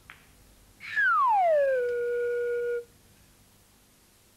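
A short click, then about a second in a whistle-like sound effect slides down in pitch and holds a steady low note for about a second before cutting off suddenly.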